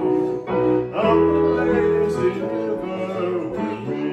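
Electronic keyboard playing a song with held, sustained chords that change about half a second and one second in.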